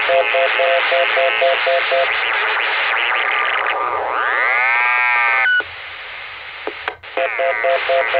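Chicago GMRS repeater heard through a Kenwood mobile radio's speaker, sending its obnoxious busy tone, a rapidly pulsing beep over static. This is the tone it sends when keyed with the Joliet repeater's 114.8 PL. In the middle it gives a squeal that sweeps up in pitch for about a second and a half and cuts off abruptly, then quieter hiss, and the pulsing busy tone returns near the end.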